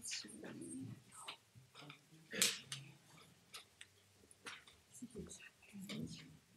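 Faint, off-microphone speech in a small room, with scattered small clicks and a short, louder noisy burst about two and a half seconds in.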